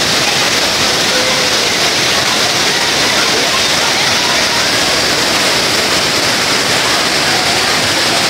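Water pouring over a low stepped river weir, a steady rushing.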